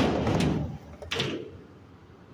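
Skateboard on concrete: a sudden clack and a rolling rumble for about half a second, then a second shorter rumble about a second in.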